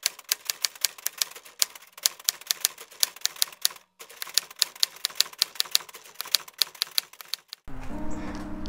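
Typewriter keys clacking in a quick, uneven run of strikes, a typing sound effect laid under text being typed onto the screen, with a brief pause about halfway through.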